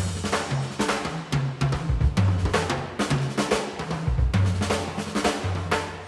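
Jazz drum break from a 1973 big-band vocal jazz recording: a drum kit playing busy hits over a moving electric bass line, with the horns and voices dropped out.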